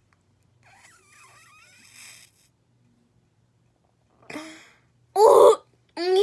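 A girl's wordless vocal noises: faint sounds in the first two seconds, a short vocal sound about four seconds in, then a loud voiced yelp about five seconds in.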